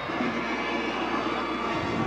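Steady stadium ambience at a football game: an even crowd din from the stands and field.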